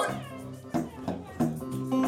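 Electric blues guitar played through a small amplifier: a short fill of about three picked single notes, each ringing and fading.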